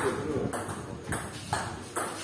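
Table tennis rally: a plastic ball clicking off paddles and the table, about four sharp hits roughly half a second apart.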